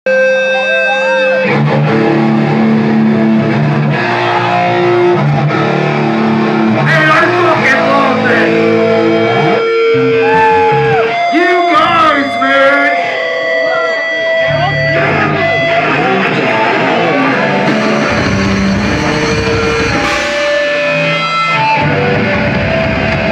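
Heavy metal band playing live: distorted electric guitars and drums at full volume, with the vocalist's voice over them around the middle.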